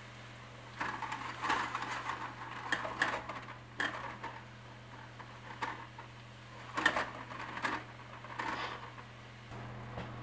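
Spoon stirring sliced mushrooms in a stainless steel pot: uneven scraping with several sharp knocks of the spoon against the pan, stopping about a second before the end.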